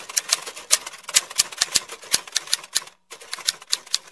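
Typewriter-style typing sound effect: a quick, irregular run of key clicks, with a brief pause about three seconds in.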